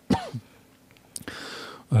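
A man briefly clears his throat, then a soft click and an audible breath drawn in before he starts speaking again.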